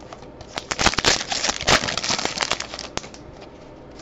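A Topps Allen & Ginter card pack's wrapper crinkling as it is torn open by hand, a dense burst of rustling that lasts about two and a half seconds.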